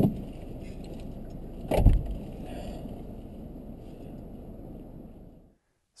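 A person climbing into a work van's passenger seat: a knock at the start, then a loud heavy door slam about two seconds in. Under it runs the van's steady low rumble, which fades out near the end.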